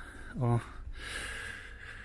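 A man's short "O", then a long breathy exhale.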